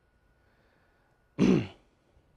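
A man clearing his throat once, a short burst that falls in pitch, about three-quarters of the way in, after a stretch of near silence.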